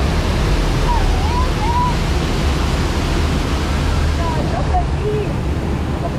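Steady, loud rush of water pouring down a wall of waterfalls beside a river-rapids raft, with a deep rumble underneath. A few brief voices call out over it.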